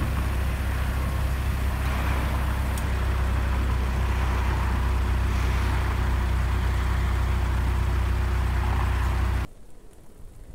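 A vehicle engine idling steadily with a deep low hum, which cuts off suddenly about nine and a half seconds in, leaving only quieter street background.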